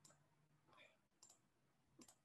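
Near silence, with three or four faint computer mouse clicks.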